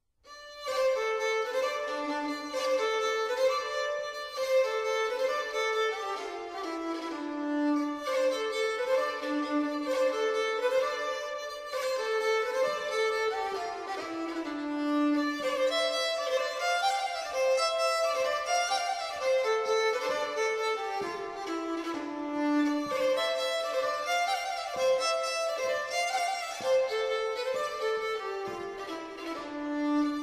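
Instrumental English country-dance jig with a fiddle playing the lively running melody, starting out of silence at the very beginning.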